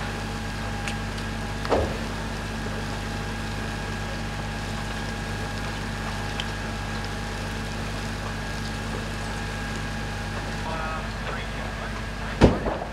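Fire appliance engines and pumps running steadily at a fire scene: a constant low drone with a steady higher whine over a rushing haze, and one brief louder sound just under two seconds in.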